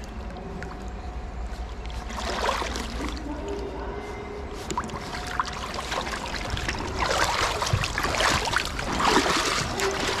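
River water running and splashing around a wading angler's legs, with a few louder surges of splashing, about two seconds in and again near the end.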